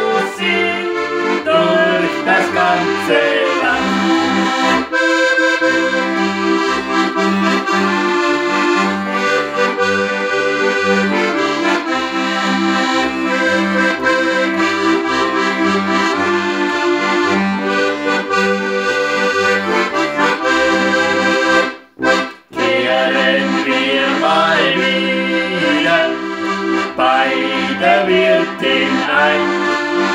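A piano accordion and a Styrian diatonic button accordion (Steirische Harmonika) playing a traditional German folk tune together, chords over a steady alternating bass. The music breaks off for two short moments a little past twenty seconds in, and voices come back in singing near the end.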